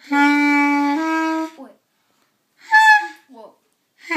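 Beginner playing a clarinet: one held low note for about a second, then a step up to a slightly higher note, which stops about a second and a half in.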